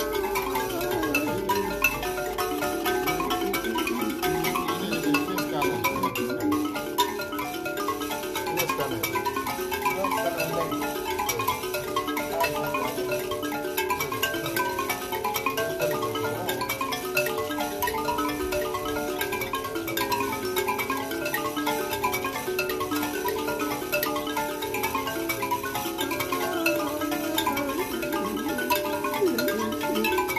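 Two mbira (thumb pianos) played in resonator cases, plucked in steady, repeating interlocking patterns, with a man's voice singing along at times.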